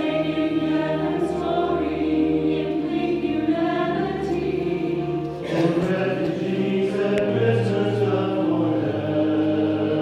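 Mixed church choir singing in sustained chords; a new phrase enters about five and a half seconds in.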